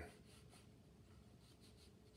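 Near silence, with a faint rustle of a round watercolour brush stroking across paper.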